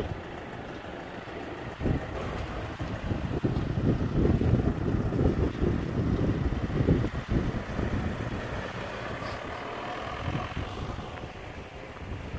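Fiat Ducato van pulling away and driving off, its engine and tyres loudest a few seconds in and then fading as it moves away. Wind buffets the microphone throughout.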